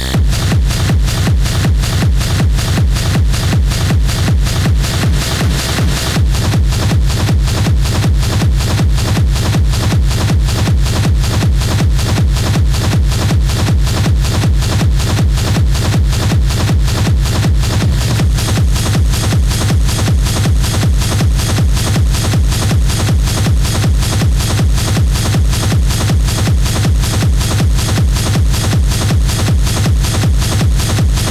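Schranz hard techno from a DJ set: a fast, pounding kick drum with dense, distorted percussion loops in a steady rhythm.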